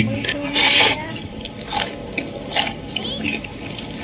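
A man eating by hand, chewing a mouthful of fried squid and rice with wet mouth noises and small clicks. A short hummed 'mm' comes near the start, and a brief noisy burst under a second in.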